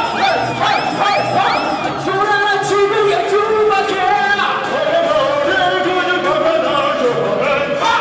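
A man singing loudly into a handheld microphone over a karaoke backing track, holding long notes. In the first second the track carries a swooping figure that repeats about twice a second.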